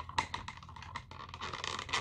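Clear plastic blister pack handled in the hands: a string of light, irregular clicks and crinkles from the thin plastic.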